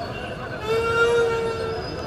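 A vehicle horn sounds once, a steady note lasting about a second, starting just under a second in, over the murmur of a crowd in the street.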